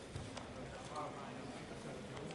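Faint murmur of voices with a few scattered light clicks.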